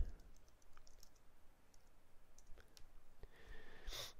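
Faint, light keystrokes on a computer keyboard: an uneven run of soft clicks as a short phrase is typed, with a sharper click at the end.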